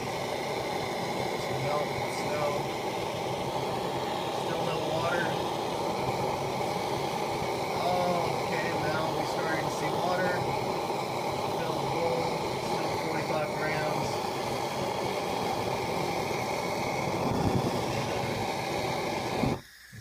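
Hand-held propane torch burning with a steady hiss as its flame plays on a snowball, then stopping abruptly near the end.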